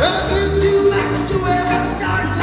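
Live reggae band with a horn section playing while a male singer sings over it, with one long held note in the first second.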